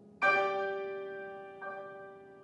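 Amplified piano: a loud chord struck about a quarter second in rings on and slowly dies away, and a softer chord is struck near the end.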